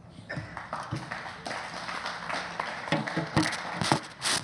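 Audience applauding, a steady patter of many hands.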